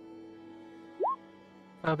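Soft background music with held notes. About a second in comes a single short plop: a quick upward glide in pitch, louder than the music.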